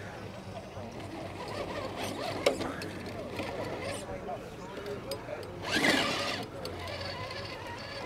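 Electric RC rock crawler's motor and gearbox whirring as it crawls slowly up a rock face, with tyres scrabbling over the stone. A single sharp click comes about two and a half seconds in, and a louder rush of noise about six seconds in.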